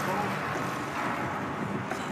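Steady outdoor machinery drone, like an engine running at a site, with indistinct voices mixed in.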